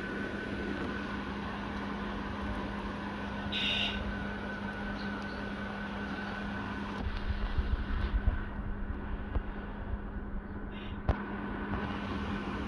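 Steady background hum with a faint held whine, broken near the middle by low, uneven bumps and a single sharp click near the end.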